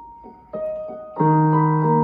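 Electronic keyboard with a piano voice playing slowly: a single note, a second note about half a second in, then a louder full chord with a low bass note just over a second in, held and ringing.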